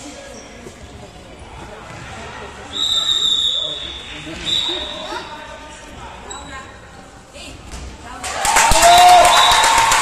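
A referee's whistle blown twice in an echoing sports hall, each blast about a second long, around three and four-and-a-half seconds in. From about eight seconds on, spectators clap and cheer.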